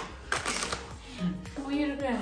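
A voice over background music, with a few clicks and rustles as plastic food packaging and jars are handled on a kitchen counter.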